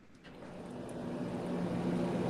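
Background noise coming in through someone's open microphone: a steady low hum under a hiss, fading in about a quarter second in and growing steadily louder.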